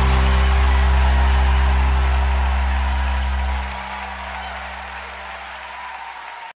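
Live worship band holding a final chord with deep bass, under crowd applause. The chord stops about three and a half seconds in, leaving only the applause.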